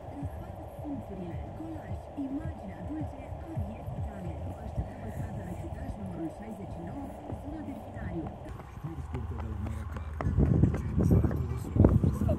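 Indistinct voices talking over a steady background hiss. From about ten seconds in, wind buffets the microphone with low rumbling gusts.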